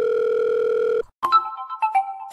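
A phone's ringing tone as heard by the caller: one steady electronic beep that cuts off about a second in. Just after it, a cell phone ringtone of short electronic notes at changing pitches starts.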